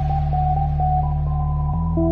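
Electronic dance music without vocals: a loud, sustained synth bass note that steps to a new pitch near the end, under a higher synth line of short repeated notes at about four a second.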